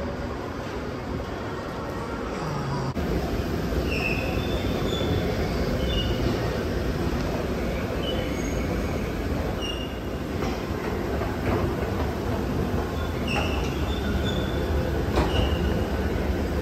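A moving escalator running: a steady low rumble that grows louder about three seconds in, with short high squeaks every second or two.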